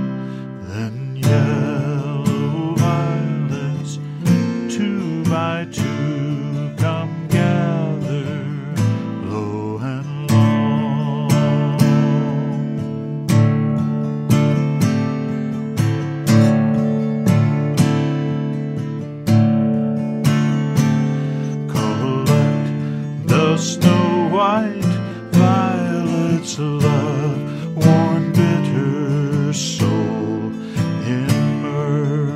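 Instrumental passage of a gentle song: acoustic guitar picked and strummed in a steady pulse, with a wavering melody line carried above it.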